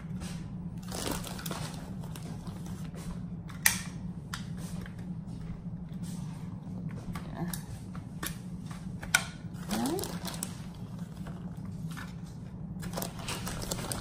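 Plastic bag of shredded mozzarella crinkling and rustling as a hand digs cheese out of it, with a couple of sharp clicks, over a steady low hum.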